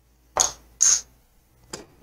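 Casino chips clacking as they are set down on the craps layout: two sharp clicks with a bright ring, about half a second apart, and a fainter click near the end.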